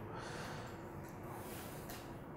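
Quiet room tone with a faint steady hum, and a soft breath out through the nose about a second and a half in.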